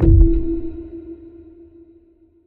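Logo sting: a low boom and a single electronic tone struck at once, the tone ringing on and fading away over a couple of seconds.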